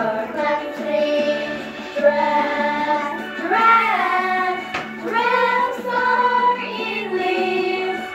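A small group of children singing a song together, holding notes that rise and fall, with short breaks between phrases.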